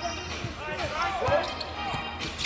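Game sound from a basketball court in play: a ball bouncing on the hardwood floor in scattered knocks, with faint voices behind it.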